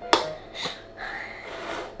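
A spoon clinking once, sharply, against a ceramic bowl near the start, followed by quieter small noises at the table.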